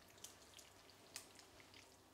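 Near silence, with a few faint short clicks and wet sounds as metal tongs lift sauced tagliatelle out of a frying pan.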